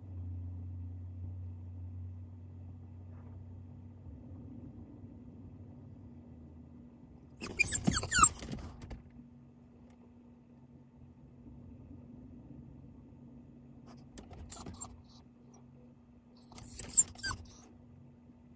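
A Newfoundland dog making noises right at the microphone, with its metal chain collar jingling, in three short bursts: a loud one about halfway through, a smaller one later, and another loud one near the end. A low steady hum runs underneath.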